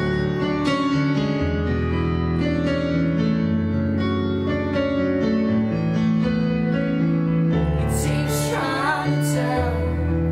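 Piano chords played on a stage keyboard in a slow, steady progression over held bass notes, with a short sung phrase near the end.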